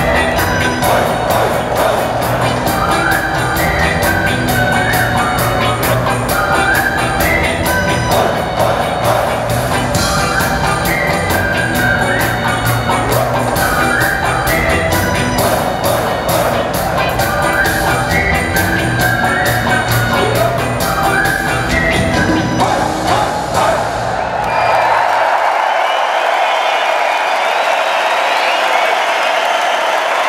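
A live rock band with drums, bass, electric guitars, keyboards and saxophones plays with a steady beat. The song ends about 25 seconds in, and a large arena crowd cheers and applauds.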